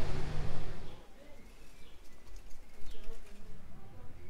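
Faint bird calls over quiet outdoor ambience, with a low steady hum that fades about a second in.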